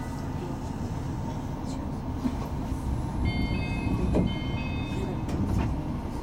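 Tama Monorail car standing at a station platform with a steady low rumble of its running equipment. About three seconds in, a high electronic chime sounds in two short spells of tones, typical of the door-closing signal, and the car begins to move near the end.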